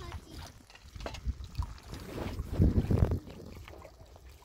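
Wind buffeting the microphone in uneven low rumbling gusts, strongest about two to three seconds in, with a few small knocks.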